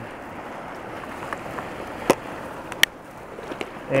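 Steady rush of a river, with a few sharp plastic clicks and knocks as fly boxes are snapped shut and handled; the loudest click comes about two seconds in and another just before three seconds.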